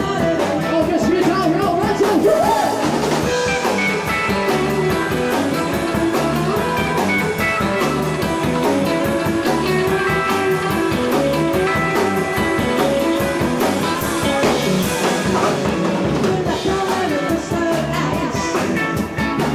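Live rock-and-roll band playing at a steady beat, with drum kit and electric guitar, while a woman sings lead into a microphone.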